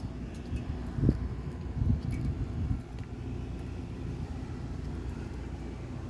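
Wind rumbling on the microphone over the steady low hum of rooftop air-conditioning condensing units running, with two stronger gusts about one and two seconds in.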